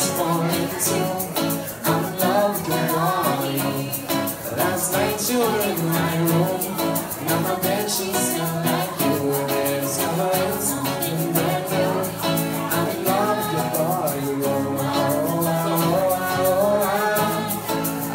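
Live acoustic music: a steel-string acoustic guitar strummed under male and female singing, with a small egg shaker keeping the rhythm.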